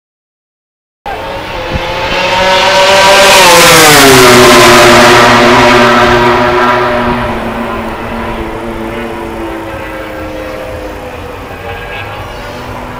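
A racing motorcycle passing at speed: its engine note cuts in suddenly about a second in, grows loud, drops in pitch as it goes by, then fades away.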